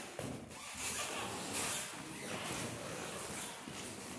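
Rustling movement noise, with two louder bursts, one about a second in and one about a second and a half in.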